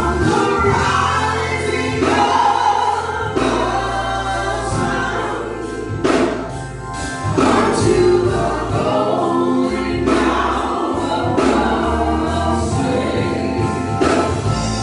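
Gospel praise singing: a small group of voices, men and women, sing together into microphones over instrumental accompaniment with a bass line and a steady beat.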